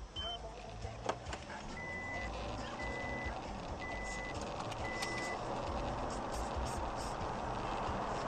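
Four short electronic beeps of one steady pitch, evenly spaced about a second apart, over the steady road and engine noise of a car driving.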